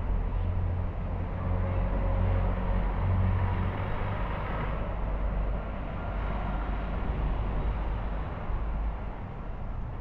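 Street traffic going by: vehicles passing with a steady low rumble, loudest in the first half.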